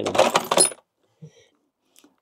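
Small metal tools clinking briefly as they are handled, mostly under a spoken word, then a faint tap about a second later.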